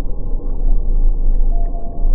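Sound-designed deep-sea ambience: a heavy low rumble under murky underwater noise, with a thin steady tone coming in about one and a half seconds in.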